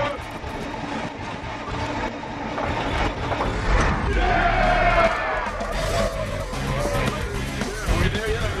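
Background music over a vehicle engine starting as the ignition key is turned, then running. A long whooping voice rises over it about four seconds in.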